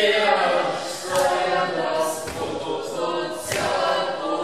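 Several voices singing together in chorus, a cappella, with a few sharp hits cutting through about a second in, at about two seconds and again near the end.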